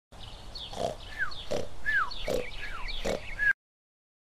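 An animal-like voice calling four times, about three-quarters of a second apart, each call with a short falling squeal, over higher chirps; it cuts off suddenly shortly before the end.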